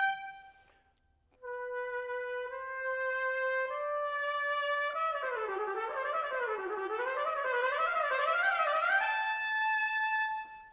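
Solo trumpet playing an excerpt: a held note breaks off, and after a short pause the line climbs through a few long held notes. It then runs quickly up and down in waves before settling on a long, higher held note near the end.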